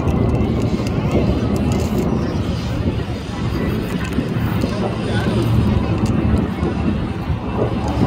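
Steady jet-engine rumble from a nine-ship formation of BAE Hawk jet trainers flying overhead, mixed with indistinct crowd chatter.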